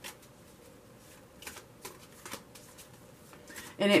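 A tarot card deck being shuffled by hand: faint, scattered card noise with a few sharper clicks. A woman's voice starts near the end.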